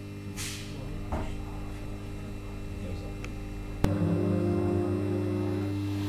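Steady low hum inside an electric suburban train, with a short hiss about half a second in. A sharp click comes near four seconds, after which the hum is louder and carries a few steady tones.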